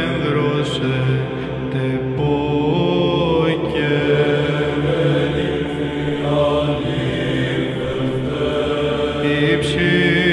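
Greek Orthodox chant in Byzantine style as background music: a voice singing a slow melodic line over a steady held low drone.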